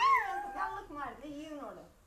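A toddler's high, wordless voice, its pitch gliding up and down, loudest at the start and fading away near the end.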